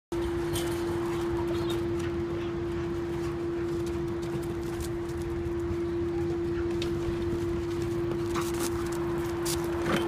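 Two dogs playing, with a few scattered light clicks and scuffs, over a steady humming tone that runs unbroken.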